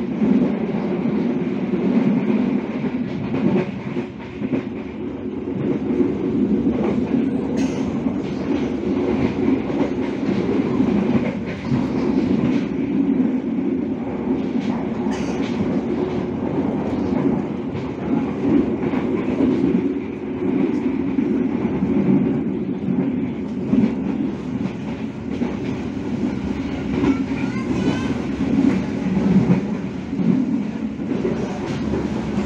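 Moving passenger train heard from inside a coach: a steady rumble of steel wheels on the rails, with clickety-clack from the rail joints.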